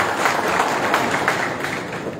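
Audience applauding, dying down toward the end.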